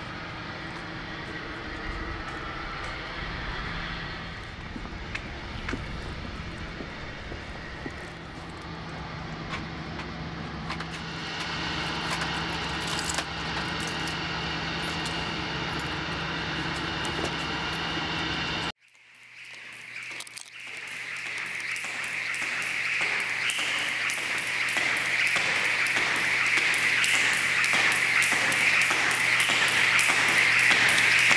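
Outdoor urban background noise with a steady low hum for about the first two-thirds. It breaks off suddenly, and a hissy, droning swell builds steadily louder to the end.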